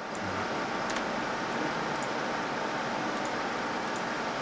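Steady room noise, an even fan-like hiss, with a few faint clicks scattered through it.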